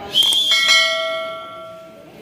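A bell ringing: struck just after the start, with further tones joining within about half a second, then fading away over a second and a half.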